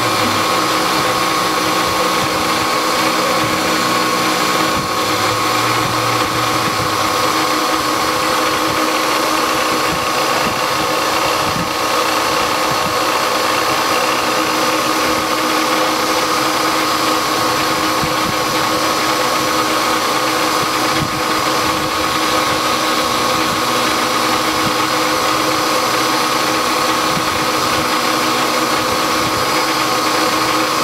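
Milling machine with its end mill taking a finish pass around the profile of a connecting rod: a steady machine whine with continuous cutting noise.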